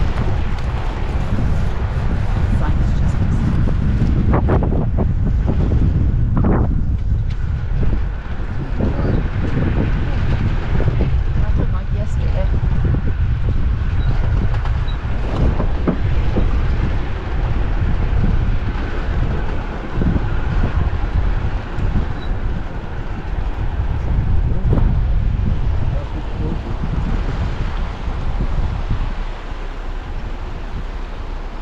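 Jeep Gladiator driving slowly along a dirt track: a steady low rumble of engine and tyres, with wind buffeting the microphone.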